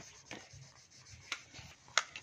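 Plastic crayon rubbing back and forth on colouring-book paper: soft, scratchy strokes with a few short ticks.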